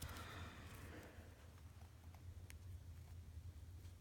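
Near silence with faint handling noise and a couple of small clicks as scissors are worked around the plastic tag joining a pair of socks.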